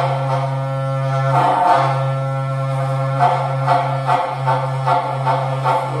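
Berrante, the Brazilian ox-horn trumpet, blown in one low droning note with many overtones, broken off briefly twice, then pulsed in a run of rhythmic accents about two a second in the second half.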